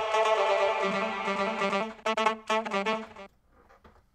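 Sustained saxophone loop played through glitch effects, chopped into rapid repeated stutters that turn coarser near the end, then cut off suddenly a little over three seconds in.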